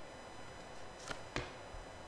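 Two short soft taps a little over a second in, about a quarter second apart: a tarot card being drawn from the deck and laid down on a cloth-covered table.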